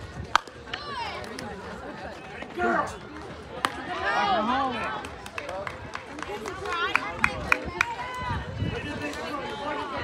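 A softball bat striking the ball with a sharp crack just after the start, followed by spectators shouting and cheering, with a few sharp claps about seven seconds in.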